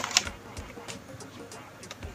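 Light plastic clicks and knocks from a Nerf foam-dart blaster being handled. The clearest click comes just after the start, followed by a few fainter ones.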